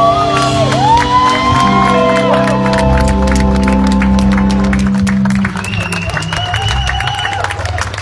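Live band with guitar, keyboard and drums finishing a song, the sliding guitar lines and held low notes stopping about five and a half seconds in. Clapping and cheers follow.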